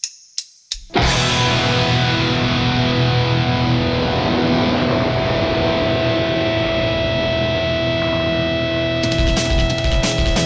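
Heavy metal intro music on distorted electric guitar: a few sharp hits, then a long sustained chord ringing out, with fast rhythmic chugging starting near the end.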